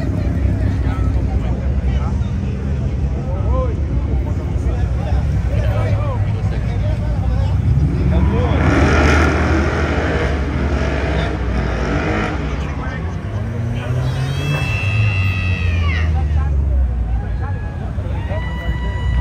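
Cars driving past with their engines running, one revving and accelerating hard about eight seconds in. A high squeal rises and falls around fourteen seconds in, over steady crowd chatter.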